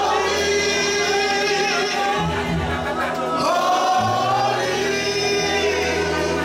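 Congregation singing a gospel praise song, led by a man singing into a microphone, over sustained low notes that change about every two seconds.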